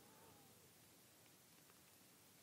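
Near silence: room tone, with a faint, brief gliding tone in the first half second.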